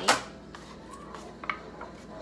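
Plastic lid snapping off a tub of frosting with one sharp crack, followed by a few light clicks as the lid is set down and the tub is handled.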